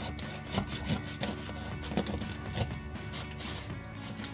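Knife sawing through the crust of a freshly baked loaf, repeated rasping strokes with light knocks on the wooden chopping board, about two a second.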